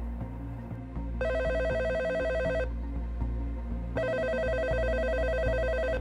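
Telephone ringing twice on a call: an electronic ring, each ring about one and a half to two seconds long with a short pause between, over soft background music.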